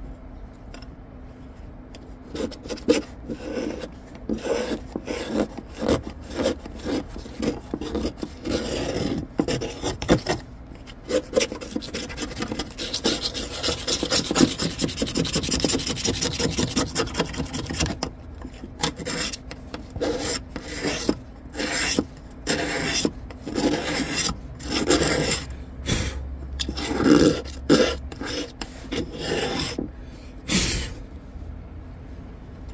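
Leftover paint being scraped off the surface of a laser-engraved white ceramic tile. Short, repeated scraping strokes start about two seconds in, run together into a steadier stretch of scraping in the middle, then break into separate strokes again.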